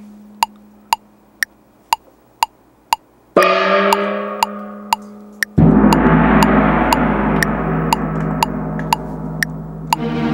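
Korg Kronos tam-tam gong sounds over the sequencer's metronome clicking twice a second. A ringing gong dies away, a new strike comes about three seconds in, and a louder, deeper tam-tam swell takes over about two seconds later.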